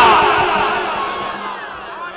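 A man's shouted voice through a public-address system, its heavy echo ringing on and fading away over about two seconds.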